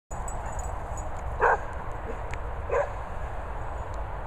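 A dog barking twice, two short barks about a second and a half apart, the first louder.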